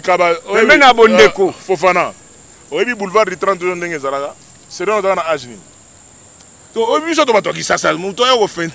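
A man talking in bursts with short pauses, over a steady high-pitched insect hum from crickets.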